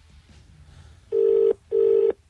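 Telephone line tone heard while a satellite phone call is being placed: a buzzy steady tone pulsing twice, starting about a second in.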